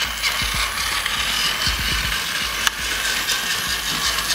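Battery-powered Plarail toy train pulling away, its small gear motor running with a steady whirring clatter, and one sharp click about two-thirds of the way through.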